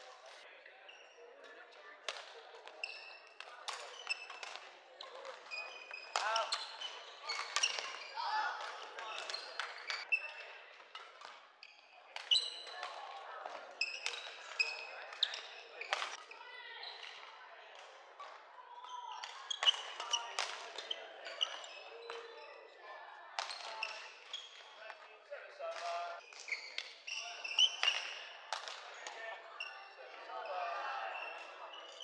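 Badminton rally: sharp racket hits on a shuttlecock, irregular and scattered through, with short squeaks of shoes on a wooden court floor, echoing in a large sports hall. Voices and calls from players and spectators come in at times.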